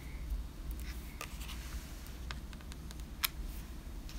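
Faint paper-handling sounds: fingers pressing a small glued paper piece onto a paper envelope, with a few light clicks and taps, the sharpest about three seconds in, over a low steady hum.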